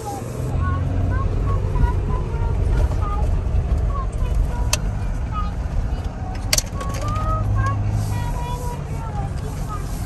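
Jeep Gladiator driving on a dirt and gravel trail, heard from inside the cab: a steady low rumble of engine and tyres. Two sharp clicks or knocks come through, one about halfway and another a couple of seconds later.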